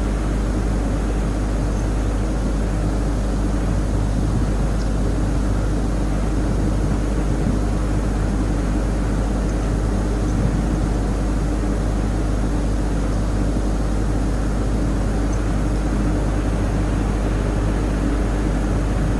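Steady low hum with a hiss over it, unchanging and with no speech: the background noise of an old lecture recording during a pause.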